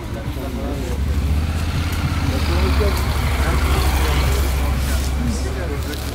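A steady low engine rumble that swells about a second in and eases near the end, with people talking over it.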